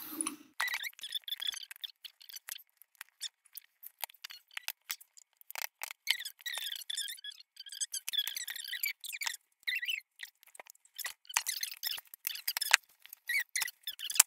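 Scissors cutting open a cardboard box: many short sharp snips and clicks, with stretches of squeaky rasping as the blades work through the cardboard.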